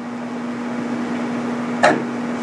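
Steady low hum over an even hiss of background noise, growing slightly louder, with one short sharp sound just before the end.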